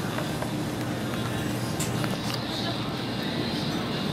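Small plastic-and-metal child-size shopping cart rolling across a hard store floor: a steady low rumble from its wheels with a few light ticks, over the general hum of a busy grocery store.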